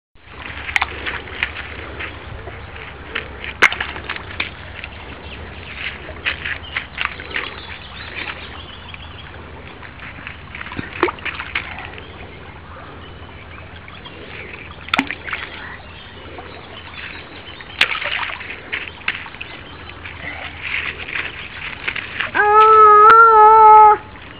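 A toddler splashing and poking in stream shallows over gravel: scattered sharp splashes and stone clicks over the steady sound of the water. Near the end a loud, high held vocal call, about a second and a half long, from the child.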